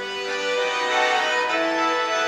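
Two accordions playing an instrumental passage of a folk tune, sustained chords with the melody moving in steps from note to note.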